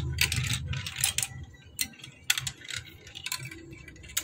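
Small balls clicking and clattering as they roll down a plastic block-built marble run and swirl through its funnels, in irregular bursts of rattling.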